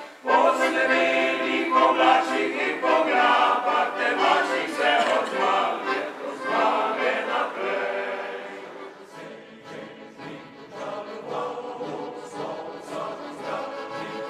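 Male choir singing, with an accordion accompanying; the singing grows quieter about nine seconds in.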